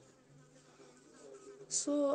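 Faint, steady low buzzing hum whose pitch steps up slightly, followed near the end by a short hiss and the start of a voice.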